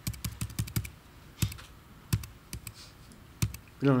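Computer keyboard keys being pressed in quick, irregular clicks, a few heavier taps among them, as slides are skipped through.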